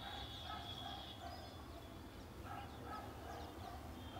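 A bird calling faintly in the background: two short runs of repeated notes, one about half a second in and one from about two and a half seconds.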